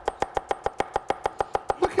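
Steel cleaver chopping an onion on a wooden cutting board in quick, even strokes, about eight knocks a second, each with a short ring.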